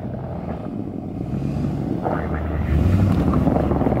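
SUV engine running at low speed as it reverses a utility trailer, a low rumble that grows louder through the second half.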